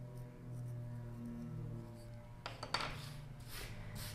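Soft background music with held notes. From about halfway, a few faint scrapes and light knocks of a wooden modelling tool working a leather-hard clay pinch pot and being set down on the table.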